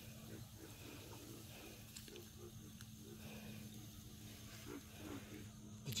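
Quiet background with a faint steady low hum and a few faint, soft scattered sounds.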